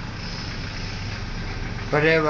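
A steady low machine hum under street background noise.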